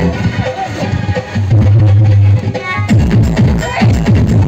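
Loud electronic dance music. About a second and a half in, the beat drops out under a held deep bass note, and it comes back in shortly before the end.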